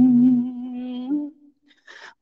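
Man's voice chanting Khmer smot, a Buddhist poetic chant. The long held note at the end of a phrase lifts slightly and fades out about a second in, followed by a brief pause and a short intake of breath near the end.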